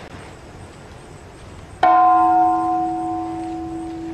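A large hanging bell struck once, a little under two seconds in, then ringing on with several tones that fade slowly, leaving a long, steady low hum.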